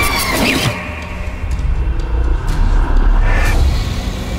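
Horror-trailer sound design: a sudden harsh jump-scare hit with shrill sliding tones, then a deep rumble that swells for about two seconds and cuts off near the end.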